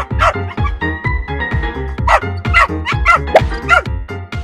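Background music with a steady beat, over which a small dog barks several short times in quick succession, mostly in the second half.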